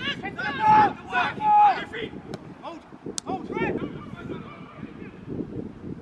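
Footballers shouting to one another on the pitch: several short calls, with two loud drawn-out shouts in the first two seconds, then quieter shouts. A single sharp knock comes about three seconds in.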